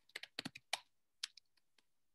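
Typing on a computer keyboard: a quick irregular run of keystrokes in the first second, two or three more a little later, then it stops.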